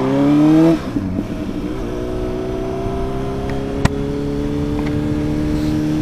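Honda CBR1000RR inline-four engine pulling up through the revs under throttle, then dropping away abruptly about a second in, as at a gear change, and running on steadily at lower revs with slowly climbing pitch. The owner says its throttle bodies have never been synchronised. A single short click sounds near the middle.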